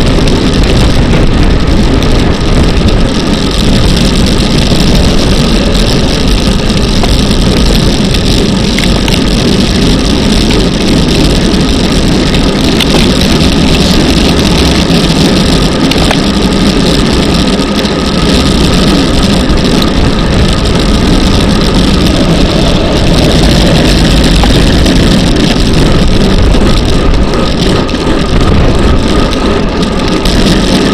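Steady, loud wind noise buffeting the microphone of an action camera mounted on a road bicycle ridden at race speed, mixed with the bike's tyre and road noise.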